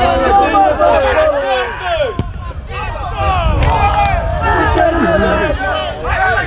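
Several voices shouting and calling out over one another on a football pitch, with a low rumble underneath. A couple of sharp knocks come about two seconds in and again a little later.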